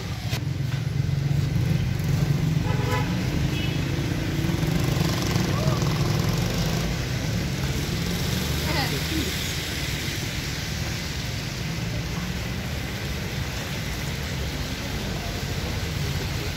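City street traffic: a steady low rumble of passing cars and scooters, with a short car-horn toot about three seconds in.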